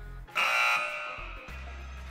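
A short quiz-show buzzer sound effect that comes in abruptly and fades away within about a second, over background music with a steady thumping bass beat.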